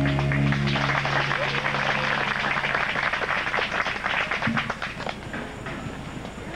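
Audience applauding as the final held chord of a song fades out during the first couple of seconds; the clapping thins out near the end.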